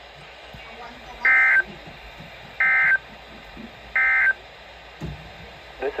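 Three short bursts of Emergency Alert System end-of-message data tones from a Midland NOAA weather radio's speaker, each about a third of a second long and a little over a second apart. They are the digital code that marks the end of the alert broadcast.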